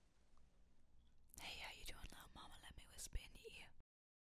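A woman whispering softly and close to a microphone for about two seconds, starting a little over a second in, with one sharp click near the end. The sound cuts off abruptly just before the end.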